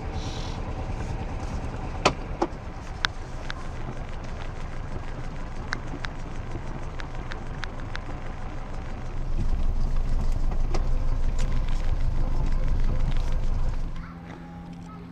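A small sailboat's engine running while motoring in harbour, a steady low rumble that pulses evenly, with a few sharp clicks in the first few seconds. It gets louder about nine seconds in.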